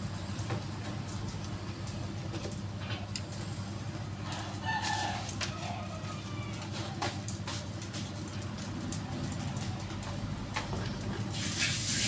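Kitchen clatter of utensils over a steady low hum, with a chicken clucking briefly about five seconds in. Near the end a hiss of oil sizzling in a wok comes in and grows louder as fritters fry.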